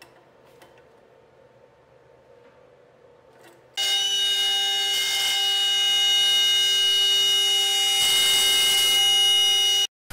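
A few faint ticks as a spindle collet is tightened with wrenches. Then, about four seconds in, a CNC router spindle starts a steady, pitched whine as a quarter-inch two-flute upcut end mill cuts MDF sheet, with a rougher hiss of cutting joining near the end. It cuts off suddenly.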